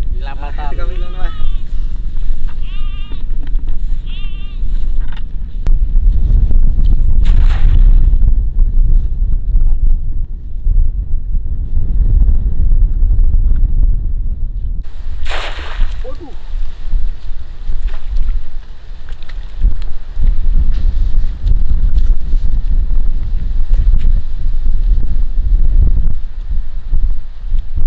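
A goat bleating, several wavering calls in the first few seconds, over heavy wind rumble on the microphone.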